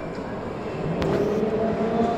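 Steady background rumble of a large hall, with one sharp knock about a second in.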